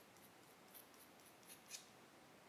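Scissors snipping through a lock of curly hair extensions as layers are cut in: a run of faint, quick snips, one slightly louder near the end.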